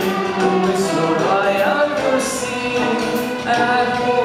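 A large string ensemble of young violinists playing a song together in sustained, held notes, with singing over the strings.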